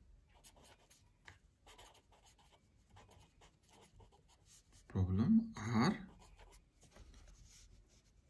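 A pen writing on paper, heard as faint, quick scratching strokes. A brief spoken phrase breaks in about five seconds in, and then the scratching resumes.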